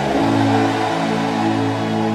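Background music: soft, sustained chords held with no beat.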